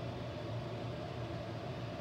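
A steady low mechanical hum with a faint hiss, unchanging throughout.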